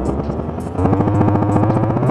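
Electronic beat playing from an Elektron Model:Samples groovebox, with a short sample looped and pitched up. About a second in, a louder, buzzy, rapidly repeating pitched tone comes in.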